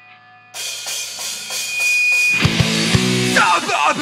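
Hardcore punk band recording starting up: a faint held guitar note gives way to drums and cymbals crashing in about half a second in, then the full band with heavily distorted guitars and bass comes in loud around the middle, with shouted vocals starting near the end.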